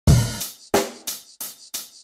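Drum-beat intro of a backing music track: a heavy first hit, then four sharper drum hits about a third of a second apart, with nothing else playing.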